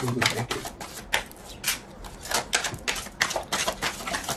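Tarot deck being shuffled by hand: a quick, irregular run of card clicks and flaps.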